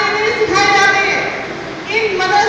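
A single voice chanting in long, drawn-out phrases with held, wavering notes.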